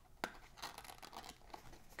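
Faint rustling and scraping of cardstock being handled as paper tabs are worked through slits, with one sharp click about a quarter second in.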